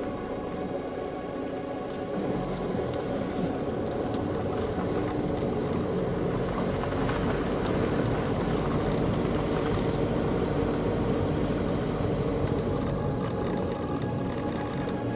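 A car driving slowly along a gravel forest track, heard from inside the cabin: a steady engine and tyre rumble that grows a little louder a couple of seconds in, with a few faint ticks from the road surface.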